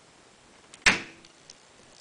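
A single sharp crack about a second in, as the bond between an ABS 3D-printed part and the PET tape on the glass build plate breaks and the part pops off.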